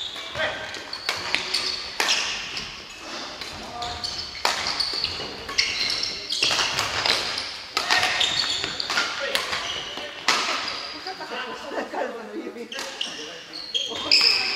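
Badminton play in a large hall: repeated sharp racket-on-shuttlecock strikes and short high squeaks of court shoes on the wooden floor, echoing, with voices of other players in the background.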